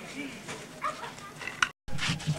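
Voices of people talking at a distance, with two short high yelps about a second and a half apart. The sound cuts out abruptly for a moment just before the end, at an edit in the tape.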